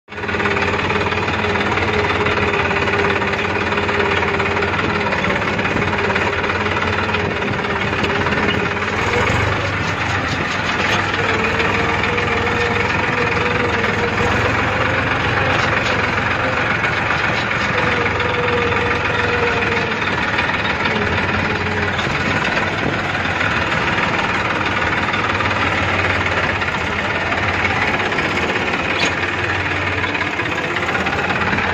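Massey Ferguson 241 DI tractor's three-cylinder diesel engine running steadily as the tractor drives, heard loud and close from the driver's seat, with the engine speed rising a little about ten seconds in and easing back later.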